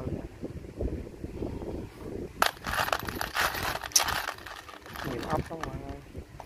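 Small steel motorcycle screws and bolts clinking and rattling against each other as a hand rummages through a loose pile of them. The clatter runs for about two seconds in the middle, with sharp clicks at its start and end.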